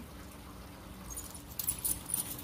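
Light clicking and rattling of a clear plastic strip of nail-swatch tips being handled, the small ticks starting about a second in.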